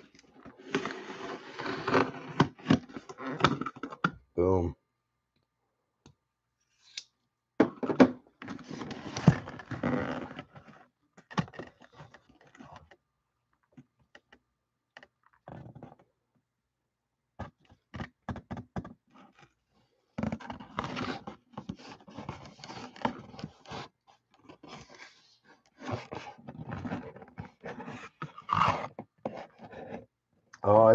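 A cardboard box being cut and opened by hand: scraping, rustling and thunks of cardboard as a sleeve is slid off and the flaps are pulled open. The noise comes in three spells of a few seconds each, with quiet gaps between.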